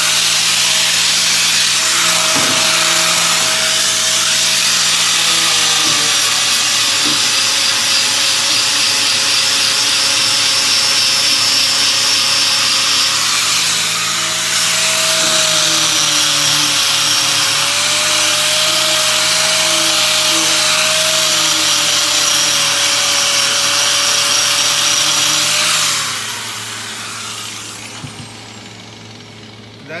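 Electric angle grinder with an abrasive disc sanding thin sheet steel smooth. It runs steadily with a motor whine that wavers a little under load and dips briefly about halfway. It cuts off a few seconds before the end and winds down.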